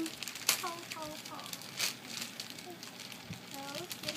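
Clear plastic bag crinkling and crackling as small hands pull it open, with two sharper crackles, one about half a second in and one near two seconds.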